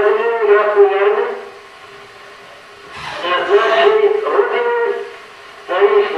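Old archival recording of a speech in Russian: a raised, declaiming voice holding long, even-pitched phrases, with short pauses between them.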